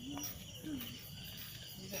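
A steady chorus of crickets chirping, with faint voices in the background.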